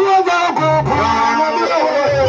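Gospel band music led by an electric guitar playing changing melodic notes over low bass notes.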